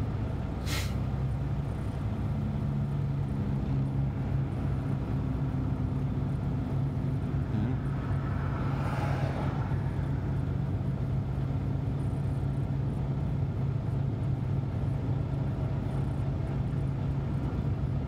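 Semi-truck diesel engine running with a steady low hum, heard inside the cab. A short click comes about a second in, and a brief rushing swell rises and fades near the middle.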